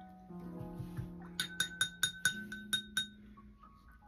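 Paintbrush rinsed in a glass jar of water, its ferrule clinking against the glass about eight times in quick succession, each clink ringing briefly.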